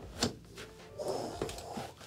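A single dull thunk as a foot drops into a brand-new, heavy-leather Nicks boot and the heel seats, followed by softer leather rustling.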